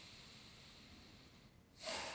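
Faint human breathing close to the microphone: one long breath fading away, a short pause, then another breath beginning near the end.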